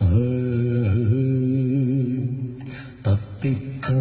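A low male voice chanting in long, sustained held notes with a slight waver in pitch, breaking off briefly about three seconds in before resuming.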